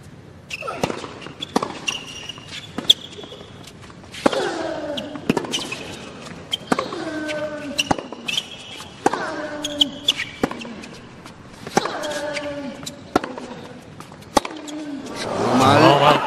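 Tennis rally on a hard court: sharp racket strikes and ball bounces about once a second, with a player's short grunt on many of the shots. A louder rising vocal exclamation comes near the end.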